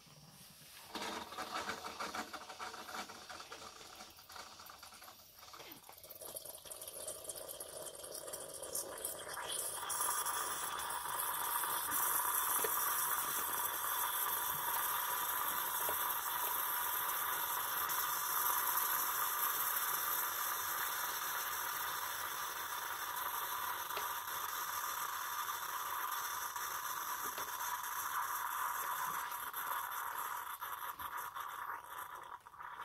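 Bosch Tassimo Vivy 2 pod coffee machine brewing from a T-disc: its pump runs with a rattle while hot coffee streams into a mug. The sound starts about a second in, builds up over the first ten seconds, then holds as a steady hiss.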